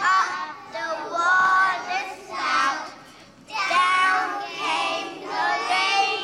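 A group of young children singing a song together in unison, phrase by phrase, with a short break about three seconds in.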